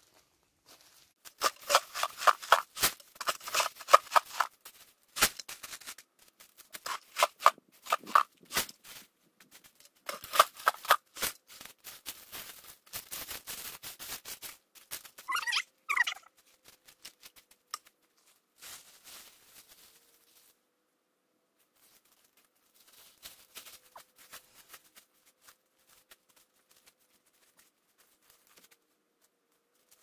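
Gravel stones tipped and shaken out of a plastic bucket, clattering and rattling in several spells over the first fifteen seconds. A short squeak sounds about halfway through, and later there are faint scattered clicks of stones being set down.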